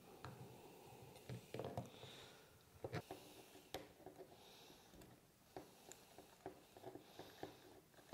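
Faint, scattered clicks and taps from small-parts handling: pliers working the small jam nut on a rheostat stem, then being set down, with the plastic handle housing handled as the nut is turned by hand.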